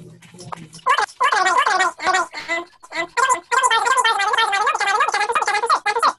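A person's high, warbling voice starting about a second in, its pitch swooping up and down in quick, continuous arcs rather than forming words.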